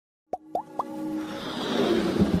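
Three quick rising bloops, then a hiss that swells steadily with held tones beneath it: sound effects of an animated logo intro.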